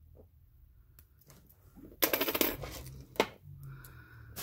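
Small pieces of costume jewelry clattering together on a wooden tabletop in a sudden rattle of rapid clinks about halfway through, followed by a single click a second later.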